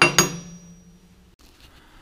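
Pieces of freshly cut 3/8-inch steel plate clanking onto a metal work table: two sharp clanks about a fifth of a second apart, the plate ringing on for about a second.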